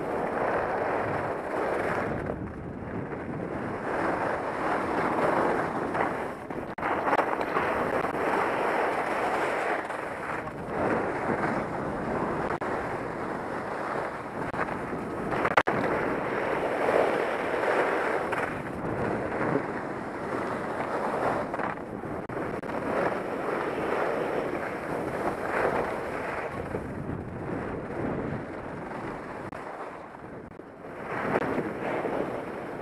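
Wind rushing over a head-mounted camera's microphone together with skis hissing and scraping over snow, swelling and easing in waves as the skier links turns down the slope. A couple of brief knocks stand out about a quarter and half way through.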